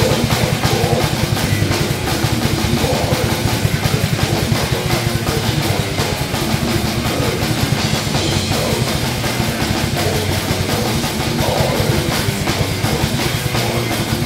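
A metal band playing live: a drum kit played fast and steadily, with cymbals ringing, under electric guitars.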